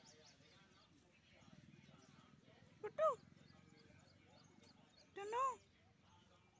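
A kitten meowing twice: a short meow about three seconds in, then a longer meow that rises and falls in pitch near the end.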